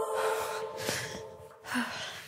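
A woman's heavy breathing, a loud breath out after exertion, over the tail of background pop music that fades out about a second and a half in.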